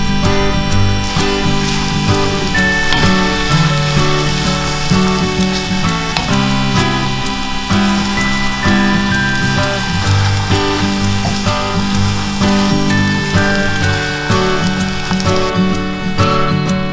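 Background music over the steady sizzle of choux pastry dough being stirred and dried out in a hot saucepan. The sizzle starts about a second in and stops just before the end.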